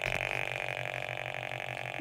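Steady electronic buzzing drone with a fast, even pulsing, a bright mid-high tone over a low hum: the audio signal of an NFA1000 field meter sensing the mains electric field around a power strip.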